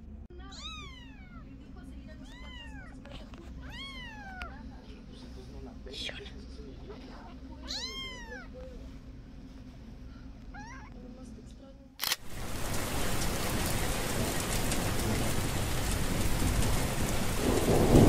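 A black kitten meowing about half a dozen times, each short high mew rising then falling in pitch. At about twelve seconds a much louder, steady rain-like rushing noise cuts in suddenly.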